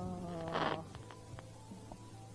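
A small ground firework buzzing as it burns, with a short hiss of sparks. The buzz fades out less than a second in, leaving a few faint crackling pops.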